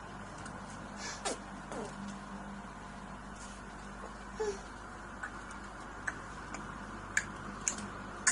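Quiet room with a steady faint hiss; a toddler makes a few brief falling vocal sounds, and several sharp clicks come in the second half.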